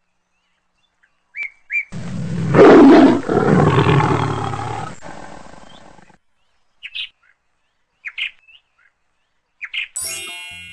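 A lion roaring once: a single long roar about two seconds in, loudest at its start and fading away over about four seconds. A few short bird chirps come before and after it.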